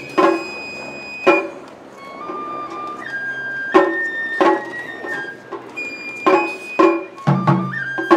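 Japanese matsuri bayashi festival music: a bamboo flute plays a held, stepping melody over irregular taiko drum strikes, with two deep drum beats near the end.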